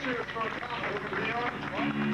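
A man's voice shouting through the PA during a live hardcore show, over crowd noise, recorded on a camcorder; steady held notes from the band come in near the end.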